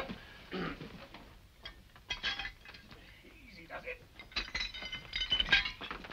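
Shards of broken china clinking and scraping on a floor as a body is lifted from among them, in scattered clicks that thicken into a quick run of bright, ringing clinks over the last two seconds. A man clears his throat at the start.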